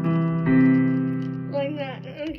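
Keyboard holding steady chords for a vocal warm-up, moving to a new chord about half a second in. The chord ends near the end and a single voice follows.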